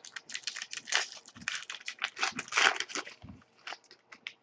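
Foil wrapper of a 2011-12 Upper Deck SP Authentic hockey card pack crinkling and tearing as it is ripped open: a quick run of rustles that thins to a few clicks near the end.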